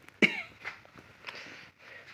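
A person coughs once, sharply, about a quarter of a second in; weaker short noises follow.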